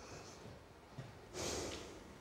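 A woman's single audible breath, lasting about half a second, about one and a half seconds in, in an otherwise quiet pause.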